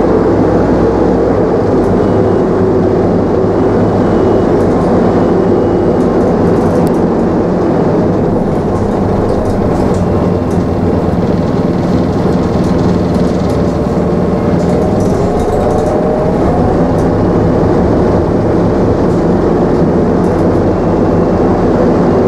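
Optare Solo midibus engine and running noise heard inside the saloon: a steady low hum with light rattles, the engine note rising briefly about two-thirds of the way through.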